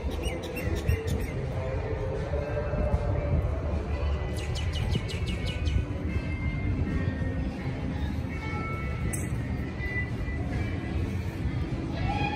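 Outdoor city ambience with a steady low rumble and background music. A bird gives a quick run of about half a dozen sharp chirps about four seconds in, with a shorter run at the start.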